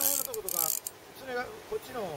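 Spinning fishing reel being cranked to retrieve a lure, its gears giving a soft, fine ticking.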